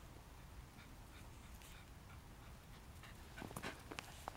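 Faint sniffing from a Pembroke Welsh Corgi with its nose down in a hole it has dug in the snow, over a low steady rumble. A cluster of louder, sharper sniffs comes near the end.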